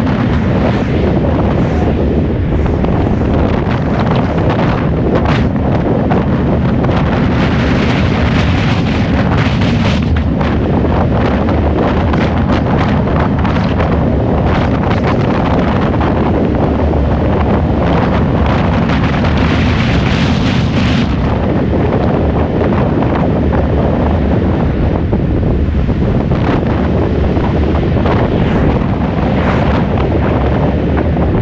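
Wind buffeting the microphone of a camera mounted on the outside of a moving Tesla, a steady heavy rushing roar mixed with road noise from the car driving. The upper hiss eases a little after about twenty seconds.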